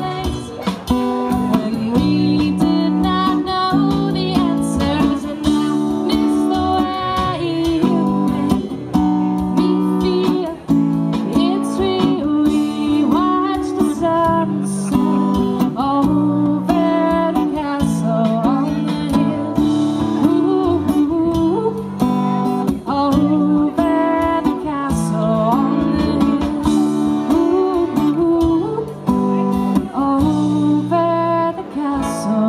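Live street-band music: strummed acoustic guitar with chordal accompaniment and a melody line that slides in pitch, playing steadily throughout.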